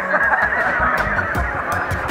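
Two men laughing heartily together: loud, overlapping laughter with wavering pitch.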